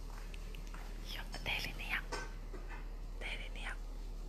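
A person whispering in two short stretches, about a second in and again near the end, over a low steady hum.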